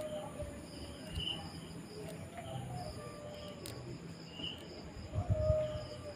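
Crickets chirping in short, repeated high-pitched bursts over a faint low hum.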